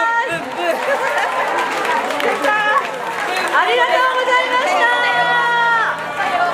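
A crowd of people talking and calling out over one another, with a long held call near the end.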